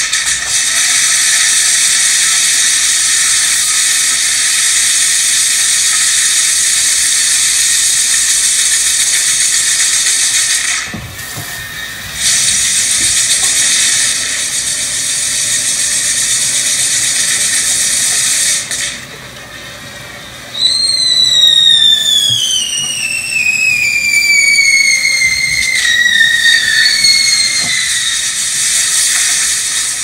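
Spark-spraying fireworks hissing loudly in long stretches, broken off twice. Past the middle, a whistling firework gives a long whistle that slides steadily down in pitch, then the hissing returns near the end.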